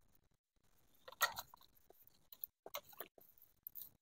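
Faint, scattered clicks and rustles of hands handling a garden hose and loose wires, a few short sounds spread over a few seconds. No pump is running.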